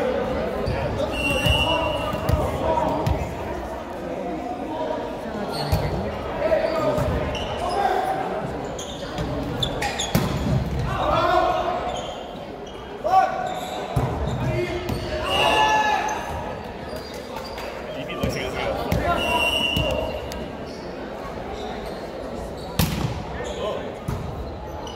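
A volleyball rally on a hardwood gym court: players' voices calling and shouting, with several sharp smacks of the ball being struck, the loudest near the end, echoing in the gym.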